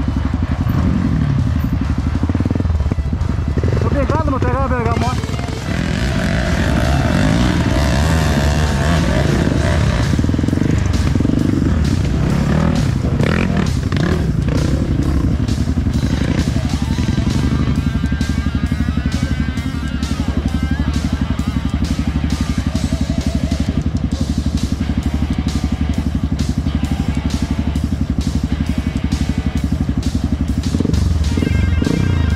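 Trail dirt-bike engines running steadily, with indistinct voices over them.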